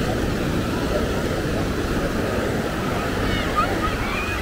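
Steady wash of small surf waves breaking along the shoreline, with wind rumbling on the microphone and faint voices of people in the water.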